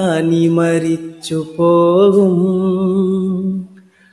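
A man singing a Malayalam Islamic song unaccompanied: two phrases, the second ending in a long held note with a slight waver, the voice stopping just before the end.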